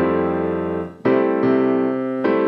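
Piano chords played slowly in a bossa nova pattern broken down step by step. A chord sounds at the start and is cut off just before a second in, then further notes follow about half a second apart.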